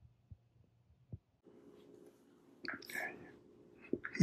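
Faint room tone with a few small clicks, then a low steady hum and, about three seconds in, a short burst of a person's whispered voice.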